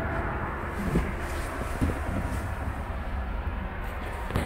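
Steady low rumble and hiss of background noise, with two faint knocks about one and two seconds in.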